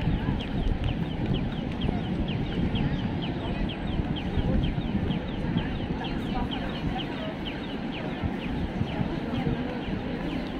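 Audible pedestrian-crossing signal chirping rapidly, about three short falling chirps a second, sounding while the walk light is green. Steady low street and crowd noise runs underneath.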